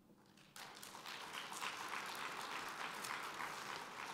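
Audience applauding, starting about half a second in and running on steadily.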